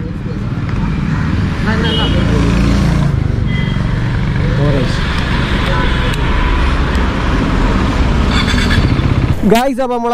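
A KTM Duke 390's single-cylinder engine idling steadily at close range, with faint voices behind it. The engine sound stops abruptly near the end as a man starts talking.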